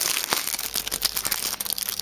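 Packaging crinkling and crackling as it is handled, a dense run of small crackles.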